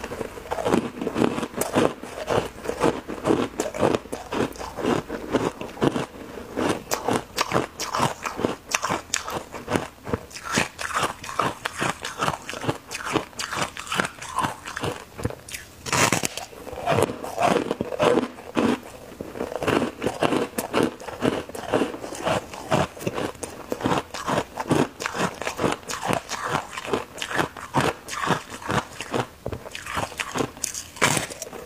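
Close-miked biting and chewing of twisted white foam-ice sticks: a continuous run of crisp crunches and crackles as the frozen foam breaks up in the mouth.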